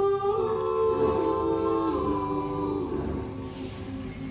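Four women singing a cappella in close harmony, holding long sustained chords that shift together a couple of times, then dying away near the end.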